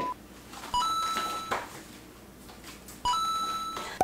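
Two identical short electronic chimes, about two and a half seconds apart, each a bright pitched ding that starts sharply and fades within a second.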